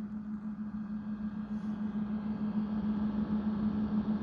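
OUPES 1200 W LiFePO4 portable power station while charging: a steady low hum over the airy rush of its cooling fan, the weird "alien type sound" it makes on charge.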